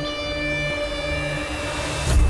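Background drama score: a held synth chord over a low bass note that pulses on and off, with a rising swell near the end.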